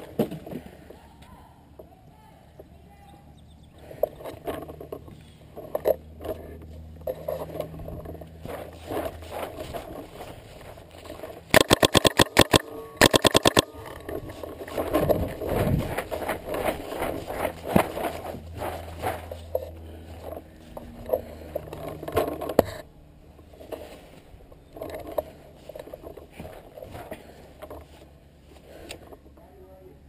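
GOG paintball marker with a Freak barrel firing two rapid strings of shots, about ten in the first and a shorter string after a brief pause, a little over ten seconds in. Around them, scraping and rustling of the marker and player moving.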